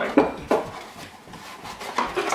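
Small handling noises: two short knocks within the first half-second, then soft rubbing as a strap is unrolled and handled.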